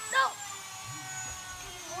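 A single shouted "No!" at the start, then a quiet room with a faint, steady high whine in the background.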